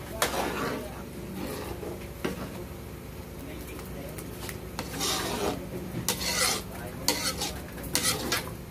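A metal ladle stirring thick pork-blood stew in an aluminium wok, scraping the pan in irregular strokes. The strokes are loudest from about five seconds in.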